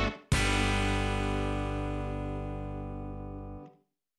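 Intro music: a closing guitar chord struck once and left to ring, slowly fading, then cut off a little before the end.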